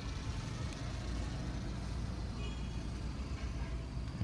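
The 2011 Hyundai Accent's engine idling steadily with the bonnet open: a low, even hum with no change in speed.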